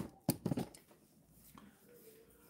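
A few short, faint clicks in the first moment, then quiet room tone.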